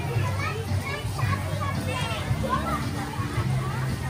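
Many young children's voices chattering and calling out at once, with a low steady hum beneath.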